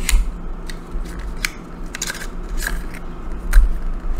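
A small cardboard lipstick box and its tube being handled and opened by hand: scattered light clicks and rustles with low handling thuds, the heaviest about three and a half seconds in.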